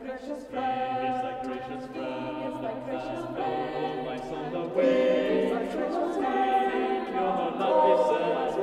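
Choir singing the opening bars of a choral anthem, growing louder about five seconds in.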